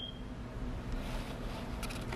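Quiet room tone: a steady low hum with a couple of faint clicks near the end.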